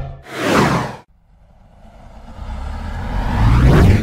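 Whoosh sound effects from an animated title intro. A whoosh fades out about a second in, then after a short gap a rising whoosh swells up and cuts off suddenly.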